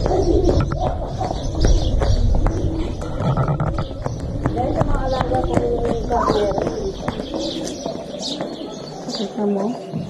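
Small birds chirping and a dove cooing, over a low wind rumble on the microphone that fades out in the second half.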